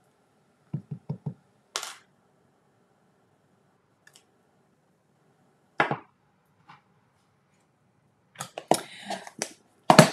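Light taps and clicks from a clear acrylic stamp block being inked and pressed onto cardstock: three soft taps about a second in, single sharper clicks around two and six seconds in, and a quick run of clicks and paper handling near the end.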